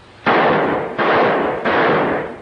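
Gunfire on an early sound-film soundtrack: three loud reports about two-thirds of a second apart, each fading out with a ring.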